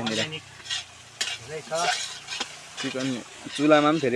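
A metal spoon stirring and scraping food in a large iron wok over a wood fire, with sharp clicks of the spoon against the pan. Voices are heard at times in between, loudest near the end.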